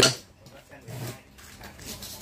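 A spoken word at the start, then a few faint handling sounds as a metal folding survival shovel and its sections are moved about.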